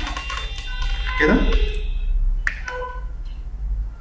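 A man's voice saying one short word over a steady low room hum. Several steady high tones sound together through the first two seconds, and a short click comes about two and a half seconds in.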